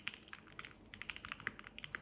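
Spark 67 mechanical keyboard with Marshmallow switches and Cherry-profile keycaps being typed on quickly. It gives a faint, rapid run of short key clicks, several keystrokes a second.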